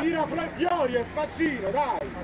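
A man's voice talking throughout, stopping at the end; only speech, with a faint steady hum beneath.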